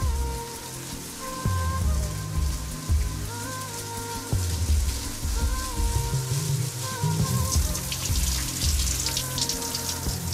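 Soft background music with a pulsing low bass and a slow melody, over the hiss of a running shower that grows much louder from about three-quarters of the way through.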